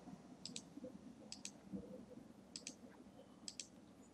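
Faint computer mouse button clicks: four quick pairs of sharp ticks, spread about a second apart, as software menus are opened one after another.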